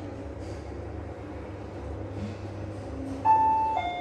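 Fujitec lift car travelling up with a steady low hum, then a little over three seconds in its arrival chime sounds as it reaches the floor: two clear tones, the second lower and ringing on.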